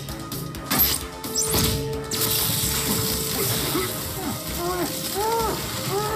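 Cartoon sound effects of a foam trick arrow: a sharp snap about a second in, then a long steady hiss of foam spraying out from about two seconds. In the last few seconds the muffled yells of the man trapped inside the foam rise and fall.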